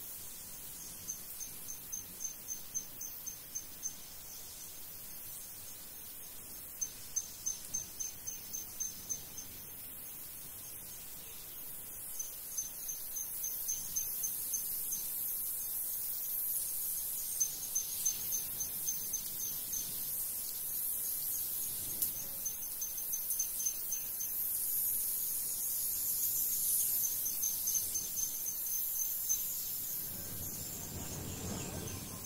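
Insects chirping: a high, evenly pulsed trill that comes in runs of a few seconds, over a high hiss of insect noise that grows louder from about halfway through.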